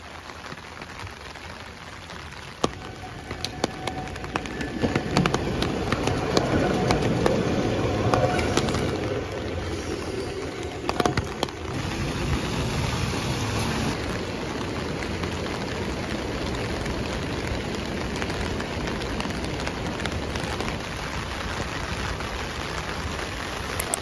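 Heavy rain falling, with scattered sharp ticks of drops; it grows louder a few seconds in and then holds steady.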